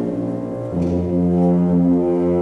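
Symphonic wind ensemble playing sustained brass-led chords. A little under a second in the chord changes and the low brass come in more strongly underneath.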